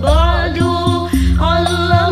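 Sholawat, an Islamic devotional song, sung by a female vocalist with a winding, ornamented melody over a backing track of bass and percussion.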